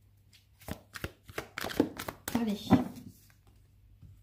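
A deck of cards handled in the hand as a card is drawn: several sharp clicks and snaps of card stock, mostly in the first half.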